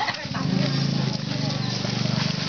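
Voices of people chatting as a group walks along a road, over a steady low rumble.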